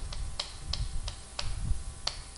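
Chalk writing on a chalkboard: about six sharp taps and clicks of the chalk striking the board, spread irregularly over two seconds.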